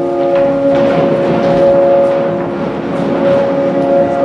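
Live pit band music: a long chord held steady under a dense, noisy wash that thickens about half a second in.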